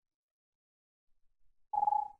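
Near silence, then near the end a brief steady beep-like tone lasting about half a second.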